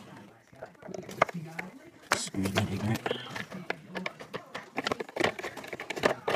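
A man speaking, his words hard to make out, with a few sharp clicks among them.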